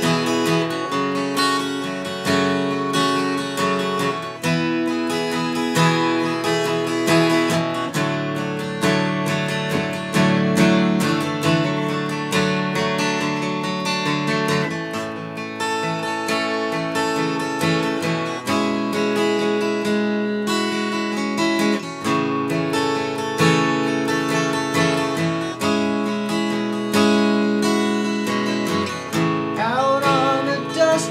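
Martin J-40 steel-string acoustic guitar played solo in an instrumental passage, its chords changing every couple of seconds.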